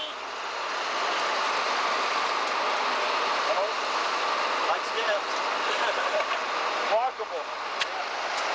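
A steady, even rushing noise, with faint voices now and then and a single sharp click just before the end.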